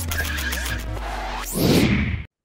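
Intro logo sting: electronic music over a deep sustained bass, with a row of quick ticks early on and a swelling whoosh that rises near the end.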